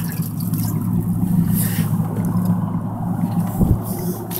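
Small fishing boat's engine running steadily at a low idle, with a dull thump shortly before the end.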